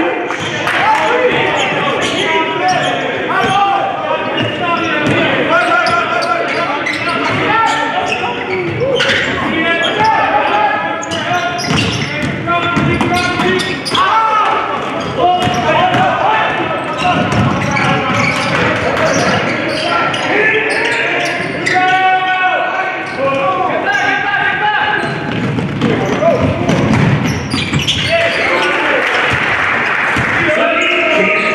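Basketball game sounds in a large gym: a ball bouncing on the hardwood floor and short sharp knocks, under steady shouting and calling from players and benches.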